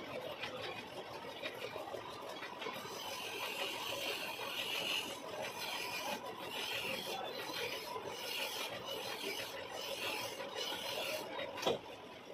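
Hand file rasping against a steel workpiece spinning in a lathe, in a series of strokes from about three seconds in, over the lathe's steady running. A sharp click near the end.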